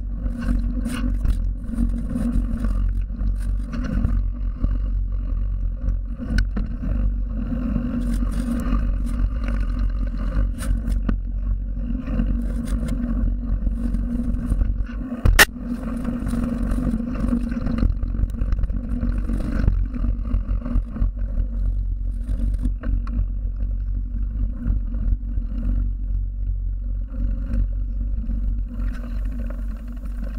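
Scott Spark 960 mountain bike riding down a dirt and gravel trail, heard from a camera on the bike: a steady low rumble of tyres rolling over the ground, with many small clicks and rattles from the bike over the bumps. A single sharp knock about fifteen seconds in is the loudest moment.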